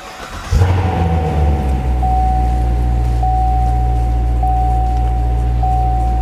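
A 2015 Chevrolet Corvette Stingray's 6.2-litre LT1 V8, breathing through its multi-mode performance exhaust, starts about half a second in. It flares briefly and settles into a steady idle. A thin steady high tone runs alongside the idle, stepping about once a second.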